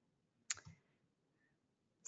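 Near silence broken by one short, sharp click about half a second in, followed closely by a fainter one.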